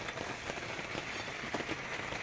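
Steady rain pattering.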